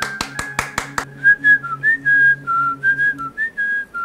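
A quick run of hand claps, about six a second, for the first second. Then a whistled tune of short notes over a low, steady backing.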